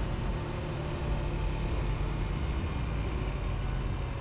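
Motorcycle engine running steadily at cruising speed, with a constant rush of wind and road noise.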